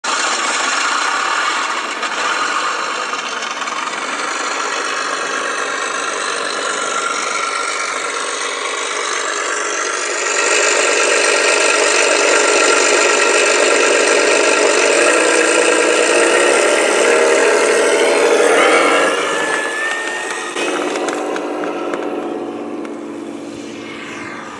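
Engine-sound module in an electric-converted P-51 Mustang model, playing a simulated piston aircraft engine through a small onboard speaker over the E-flite 110 electric motor and propeller. It runs steadily, gets louder about ten seconds in, and fades over the last few seconds.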